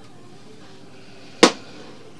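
A single sharp click about one and a half seconds in, over faint steady background noise.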